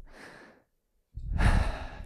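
A man breathing close to a headset microphone: a soft breath in the first half second, then about a second in a louder, longer breath with a low rumble of air hitting the mic.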